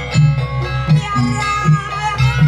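Banyuwangi gamelan music: metallophones and drums keeping an even, repeating beat, with a wavering high melody line held over it.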